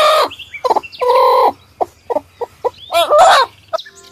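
A hen clucking: a run of short clucks broken by two longer drawn-out calls, one about a second in and one near three seconds.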